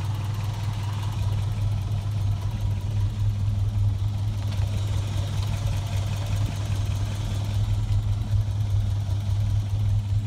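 Toyota 22R-E fuel-injected four-cylinder engine idling steadily with a low, even hum.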